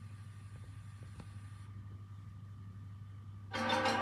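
Faint steady low hum with a thin high whine from a VHS tape playing through a TV over a silent title card; near the end, trailer music starts suddenly and loudly.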